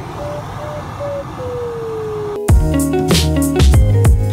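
Glider's audio variometer beeping in short pulses over the rush of air in the cockpit, then holding one steady tone that slides lower. About two and a half seconds in, this gives way to louder music with a beat.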